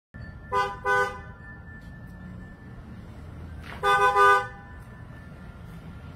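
Car horn honking: two short toots about a second in, then three quick toots around four seconds, over a steady low background rumble.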